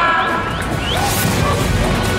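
Sudden crash-like hits and whooshes, about a second apart, laid over background music and a dense noisy bed, with a few short rising chirps.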